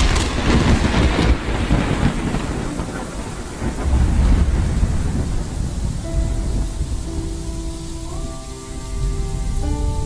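Thunderstorm sound effect: a thunderclap rolling away into steady rain hiss, with further low rumbles of thunder. Soft, slow sustained music notes come in over the rain about six seconds in.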